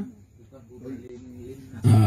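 A man's voice in a short pause in a lecture: a soft, drawn-out hesitation sound, then loud speech resumes near the end.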